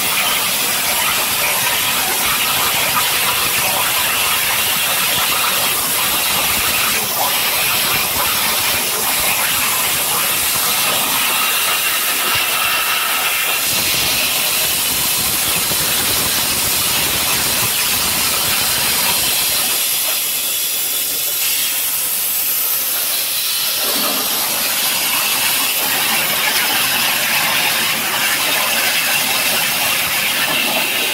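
A 60,000 psi waterjet cutting through a plate: the high-pressure stream gives a loud, steady hiss. Its lower part thins out for a few seconds a little past the middle.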